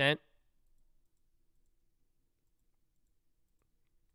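A man's voice ends a word at the very start, then near silence with only faint clicks.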